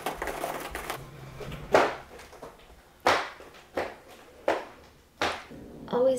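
Cat's claws raking a corrugated cardboard scratcher: about a second of rapid scratching, then five separate rasping strokes spaced out over the next few seconds.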